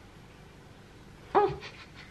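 Quiet room tone, then a woman's short startled "oh" about a second in, as she presses the hand-cream tube too hard and squeezes out too much cream.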